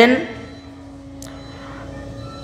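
A spoken phrase ends just after the start, then a pause in which a faint steady hum continues, with one faint click about a second in.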